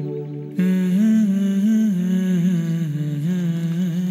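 Background film score: a wordless humming voice sings a slow, sad melody over a held low note, with a new phrase coming in about half a second in.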